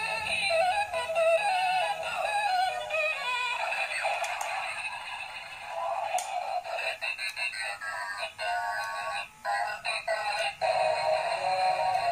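Battery-powered transforming robot-car toy playing a tinny electronic song with a synthesized singing voice through its small speaker. About halfway through, the song breaks off into a series of clicks and a falling electronic tone, then the music picks up again near the end.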